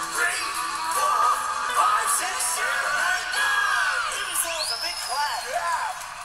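A live audience of young children cheering, screaming and whooping as the song ends, many high voices at once.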